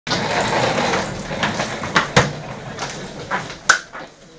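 Dressing-room hubbub of noise and voices, broken by several sharp hand slaps. The loudest come about two seconds in and near the end.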